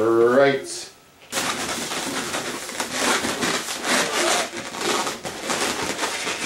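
Latex modelling balloons squeaking and rubbing as they are handled and twisted. It opens with a short wavering squeal that rises in pitch, then after a brief pause turns into continuous rubbing and squeaking of the rubber.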